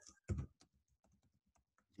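Keys being typed on a computer keyboard: one louder keystroke near the start, then a run of faint, quick taps.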